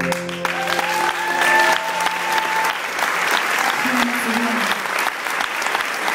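Audience applause, with a few voices cheering, as the band's last chord fades out over the first couple of seconds.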